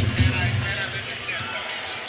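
Basketball arena sound: a steady crowd murmur with a basketball being dribbled on the hardwood court.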